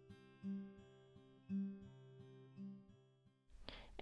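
Quiet background music on acoustic guitar, a chord struck about once a second; it stops shortly before the end.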